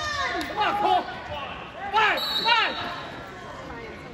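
Coaches and spectators shouting short calls to the wrestlers in a gymnasium, several bursts rising and falling in pitch, loudest about two seconds in.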